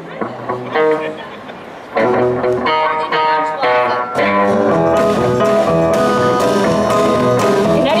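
Live band starting a song in a blues-country style: a quieter opening of a few guitar notes, then about two seconds in the full band comes in louder, with acoustic guitar, electric guitar, keyboard and drums playing together.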